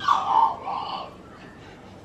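A baby whimpering briefly in the first second, fussing on the verge of crying.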